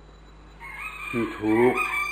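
A rooster crowing once in the background: one long, high call that starts about half a second in, with a man's voice speaking over it.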